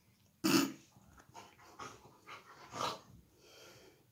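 German Shepherd puppy making short breathy sounds with its nose and mouth: one loud, sharp one about half a second in, then four or five fainter ones about half a second apart.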